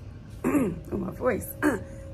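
A woman's voice making three short wordless sounds, each falling in pitch, over faint background music.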